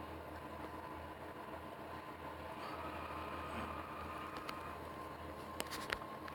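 Steady low hum and hiss of a small room's background noise, with a few faint clicks near the end.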